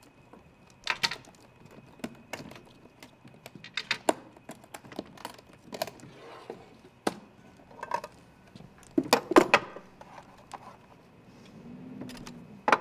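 Scattered clicks, knocks and light metallic clinks of small objects being handled: a just-opened combination lock and the props around it, with a louder cluster of knocks about nine seconds in.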